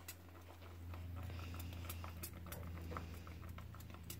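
A hand swishing in the water of a toilet bowl: faint, scattered small splashes and drips over a steady low hum.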